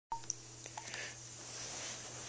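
A short electronic beep right at the start, followed by a few light clicks and knocks, over a faint steady low hum.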